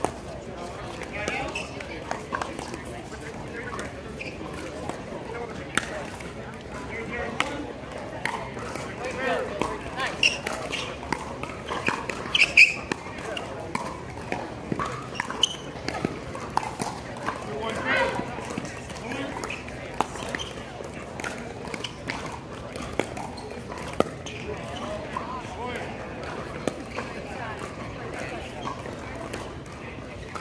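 Indistinct voices of players and onlookers around outdoor pickleball courts, mixed with scattered sharp pops of paddles striking the plastic pickleball at irregular intervals. The loudest sound comes about twelve and a half seconds in.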